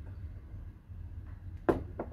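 A plastic training cup is set down on a wooden table with a single sharp knock near the end, over a low steady hum.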